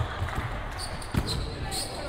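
A volleyball struck twice by hand during a rally, two sharp slaps about a second apart, over the echo of the hall.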